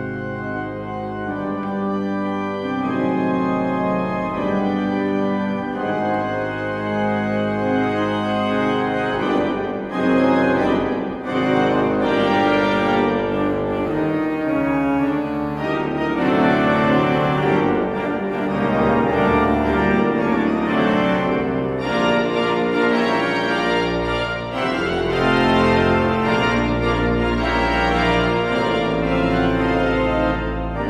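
Romantic pipe organ built by Gustav Heinze playing sustained chords that grow louder and fuller over the first ten seconds or so, then stay loud, with deep pedal bass notes joining near the end. The build-up is the organ's crescendo roller bringing in stops one after another, from soft to full organ.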